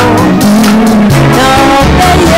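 A woman singing into a microphone over a live band of electric guitar, drums and keyboard, loud and amplified.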